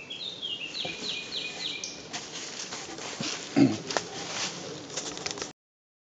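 A bird singing a quick series of about five repeated, downward-sliding high notes over steady outdoor background noise, followed by a brief low sound about three and a half seconds in; the sound cuts off shortly before the end.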